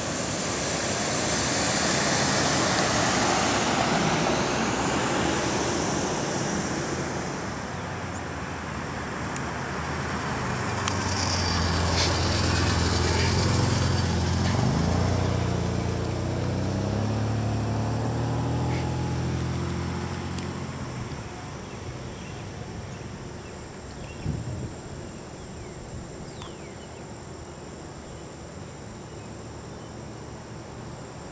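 A motor vehicle drives past: its low engine hum swells over several seconds in the middle, dips briefly in pitch and fades away, after a broad rushing noise at the start. Behind it, insects chirr steadily, plainest once the vehicle has gone.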